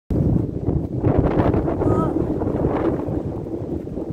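Wind buffeting the phone's microphone, a loud, steady low rumble, with a brief bit of a woman's voice about two seconds in.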